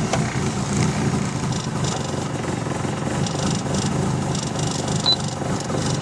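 Toyota Celica's turbocharged 2.3-litre 5S-FTE four-cylinder idling steadily just after a cold start, heard from inside the cabin.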